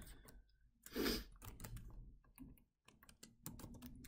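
Typing on a computer keyboard: a run of quick, light key clicks, with a brief rush of noise about a second in.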